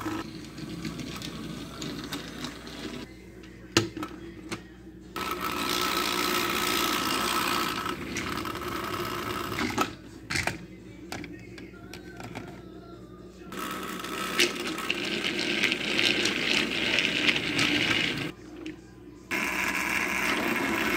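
Small battery motors of Thomas & Friends TrackMaster toy engines running in two long stretches, from about five seconds in and again from about fourteen seconds in, with a few sharp clicks of the plastic toys.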